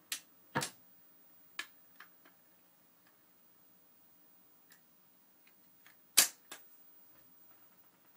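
Automatic record player's tonearm return mechanism clicking as the arm lifts off the finished record and swings back to its rest. A few sharp clicks come in the first two seconds, and the loudest click comes about six seconds in.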